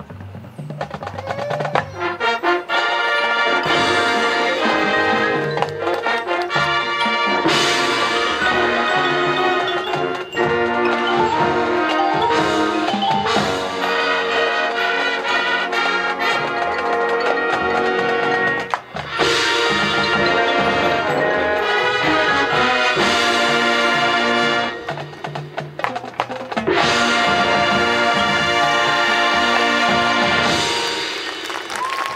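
High school marching band playing live: brass section with drums and front-ensemble mallet percussion, briefly dipping twice and ending the show on loud held brass chords near the end.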